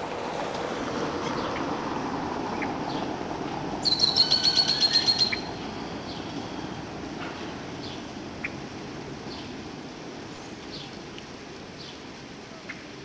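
Outdoor background noise that slowly fades, with scattered short bird chirps. About four seconds in, a loud, rapid run of about ten high chirps lasts a second and a half.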